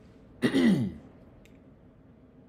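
A man clearing his throat once, briefly, with a falling pitch, about half a second in.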